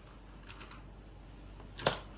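Small clicks from handling the little metal lock and key of a lockable diary, a few faint ones about half a second in and one sharp click near the end as the key comes free.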